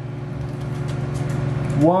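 Steady low hum of a running kitchen appliance, growing a little louder over the two seconds.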